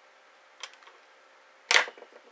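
A length of 0.8 mm copper wire being handled on the desk: a faint click, then one sharp snap near the end.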